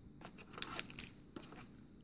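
Faint, scattered light clicks and rustles of hands handling a coiled USB-C cable and the cardboard accessory tray of a phone box.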